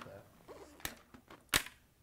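Sharp plastic clicks from handling an Arai helmet and its freshly removed face shield around the shield pivot. There are two distinct clicks, a little under a second in and about a second and a half in, the second louder, with faint handling noise between them.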